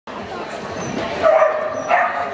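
A dog giving short vocal sounds over people talking, with a louder burst about a second in.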